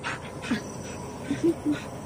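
Siberian husky giving a few short, soft whimpers.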